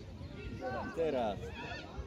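Children's high-pitched shouts from the players: a long call about a second in that slides down in pitch, then shorter wavering calls near the end.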